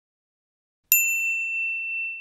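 A single bell-like ding sound effect, as used for animated like/share/follow buttons, struck about a second in and ringing on as it slowly fades.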